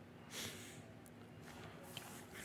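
A man's short sniff through the nose, about half a second in, against quiet room tone.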